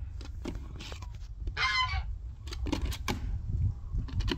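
A rooster gives one short squawk about halfway through. Around it are a few light clicks and a steady low rumble.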